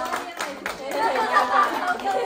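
A small group of people clapping, with excited chatter of several voices over it.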